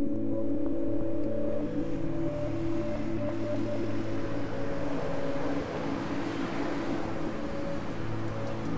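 Ambient background music holding low sustained chords, with a wash of noise that swells through the middle and eases off slightly near the end.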